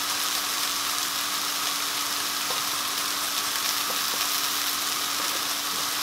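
Chopped onions frying in oil in a pan, a steady sizzle.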